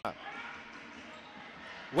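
Quiet basketball court sound: a ball being dribbled on the hardwood floor over faint crowd and player voices in the arena.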